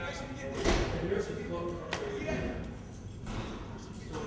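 Indistinct voices with no clear words, broken by a single thump less than a second in and a sharp knock just before two seconds; quieter after that.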